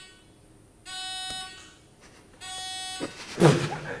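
Game-show countdown beeps: identical electronic tones, each about two-thirds of a second long, repeating about every second and a half. Near the end a burst of laughter breaks in, louder than the beeps.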